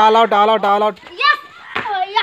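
Children shouting during an outdoor game: one loud call of quick repeated syllables held at an even pitch through the first second, then two shorter shouts, the last one falling in pitch.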